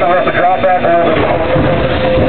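Cab noise of a running steam locomotive, a steady rumble and hiss, with a man talking over it in the first half. A thin steady tone comes in about halfway through.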